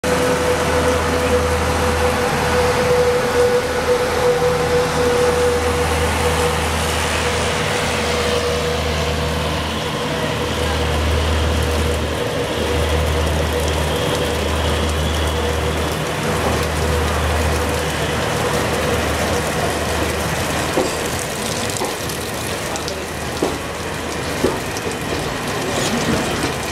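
Running noise of a slow-moving Indian Railways passenger train heard from a coach doorway: a steady rumble and rail noise with a pulsing low hum. A steady whine is loudest over the first several seconds and fades after about ten seconds. A few sharp wheel-on-rail clicks come near the end.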